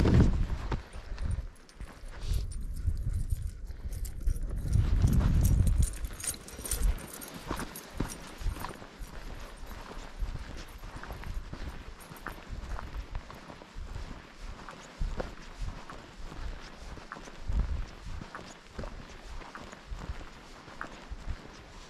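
Footsteps of a person walking on a dirt trail, about two steps a second. For the first six seconds or so a loud low rumble of wind on the microphone covers them.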